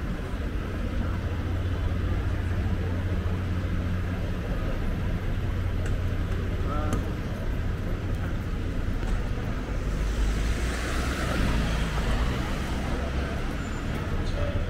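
Busy city street ambience: a steady low rumble of road traffic with passers-by talking, and a louder swell of traffic noise around ten to twelve seconds in.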